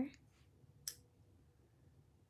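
A paintbrush set down on a wooden tabletop: one short, sharp click about a second in, with only faint room tone around it.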